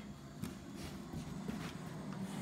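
Soft, uneven running footfalls of a dog on carpet as it chases a thrown toy, with a couple of light knocks.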